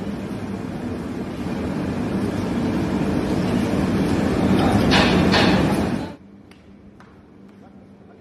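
Loud, steady rumbling kitchen noise around large coal-fired biryani pots under a metal exhaust hood. It grows louder, with brief rasping scrapes of a shovel on hot coals near five seconds, then cuts off abruptly about six seconds in. Quieter room sound with a few light clicks follows.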